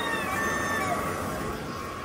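Steady mechanical running noise with a faint constant hum from a waste-oil burner and the pump circulating thermal fluid through its heater coil. It eases slightly toward the end.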